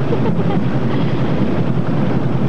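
Motorboat engine running steadily, with wind noise on the microphone.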